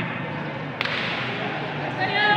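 A single sharp smack a little under a second in, a pencak silat kick or strike landing on the opponent, over a steady background hubbub.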